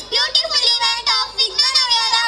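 A young girl's voice, amplified in a large hall, in a lilting, sing-song delivery with short breaks between phrases.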